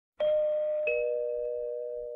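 Two-tone doorbell chime, a higher note and then a lower one well under a second later, both ringing on and fading slowly. The chime is slowed down and drenched in reverb.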